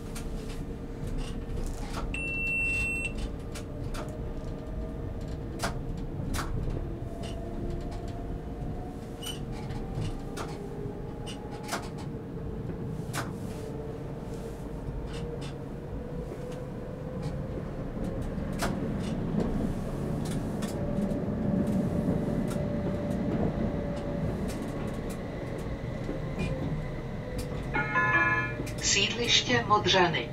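A Prague tram heard from the driver's cab while it runs: a steady low rumble of wheels on rail, with an electric motor whine that rises and falls in pitch as it speeds up and slows down. It is broken by scattered sharp clicks and a short high beep about two seconds in, and near the end the onboard stop announcement begins.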